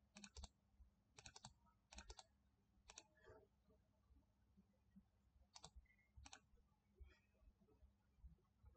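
Faint clicking at a computer, in short clusters of two or three quick clicks: three clusters in the first two seconds, another at about three seconds, and two single clicks later on.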